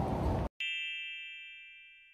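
Background noise cuts off about half a second in, followed by a single bright chime that rings on and slowly fades: the ding of a subscribe-button end-card sound effect.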